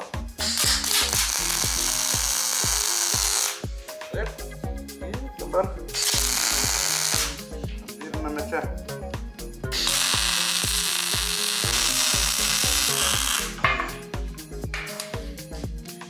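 MIG welder arc laying welds on steel square tube, a steady hiss in three runs of about three seconds, one second and four seconds with short pauses between, over background music with a beat.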